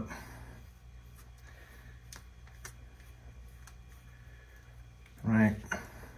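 Quiet room tone with a few faint clicks from handling a nitrogen shock-fill kit's regulator, gauge and valves; a man speaks briefly near the end.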